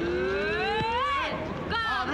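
A heckler's drawn-out taunting yell, "Eeeeeeh…", rising steadily in pitch for over a second before breaking off. It is followed near the end by a short shouted insult.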